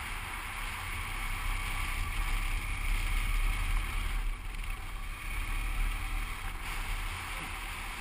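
Wind buffeting a helmet-mounted microphone as a motorcycle sidecar rig is ridden along, a steady low rumble with road and engine noise underneath.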